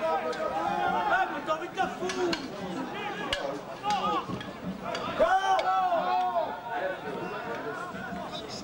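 Several voices shouting and calling over one another on a football pitch, players and onlookers, with no clear words, loudest in a burst of calls about five seconds in. A single sharp knock sounds a little after three seconds.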